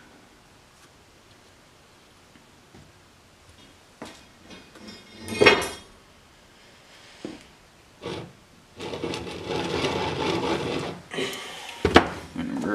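Handling noises at a workbench as a plastic quart bottle of motor oil and a centrifugal clutch are picked up, moved and set down: a click about four seconds in, a louder knock about a second later, a couple of lighter knocks, then a stretch of rubbing and scraping near the end.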